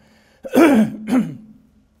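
A man coughing and clearing his throat: two short, rough bursts about half a second apart.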